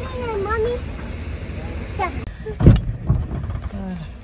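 A car door shutting with a single heavy thud about two-thirds of the way through. A child's high, gliding voice is heard near the start.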